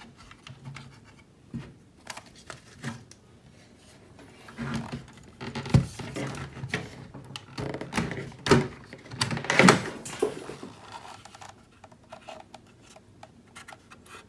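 Plastic clicks and knocks of a Rollo thermal label printer being handled: the lid opened and the inner parts and latches worked by hand. The sharpest knocks come about six, eight and a half and ten seconds in.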